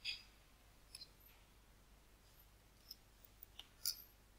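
Computer mouse clicks, about half a dozen short, sharp clicks spread over a few seconds against near silence, the loudest one right at the start and several close together near the end.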